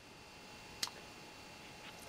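Quiet room tone with one short, sharp click a little under a second in and a fainter tick near the end. The clicks most likely come from moving the sliding tap clamp on a wirewound power resistor to lower its resistance.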